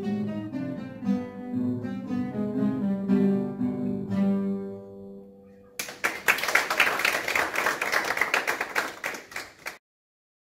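Classical guitar ensemble playing the closing phrase of a piece, the final chord dying away about five seconds in. An audience then breaks into applause for about four seconds, which cuts off abruptly just before the end.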